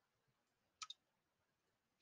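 Near silence broken by two quick clicks close together about a second in, from operating a computer while editing code.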